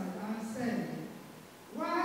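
A woman reading aloud into a microphone in a drawn-out delivery, her voice holding pitches on long syllables, with a short pause about a second and a half in.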